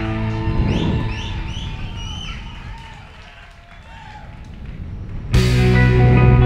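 Live rock band of drums, electric bass and electric guitars: a hit just under a second in rings out and the sound dies down for a few seconds, then the full band comes back in loudly and abruptly about five seconds in.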